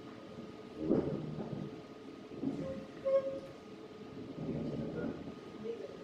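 Indistinct low voices in short irregular bursts, over a faint steady hum.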